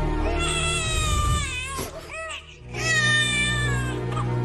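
A newborn baby crying in long wails, with a few short cries about two seconds in, over a low, sustained music score.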